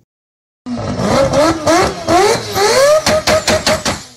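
Engine revving in quick repeated blips, each a rising whine, then a fast run of sharp pops near the end.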